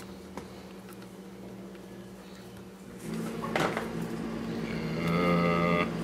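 A low steady hum, a single sharp plastic click a little past halfway as the Lee hand priming tool is worked open, and a louder low droning tone near the end.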